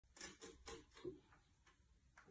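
Faint scratching, about four quick strokes in the first second: a cat's claws on the sisal-rope post of a cat tree.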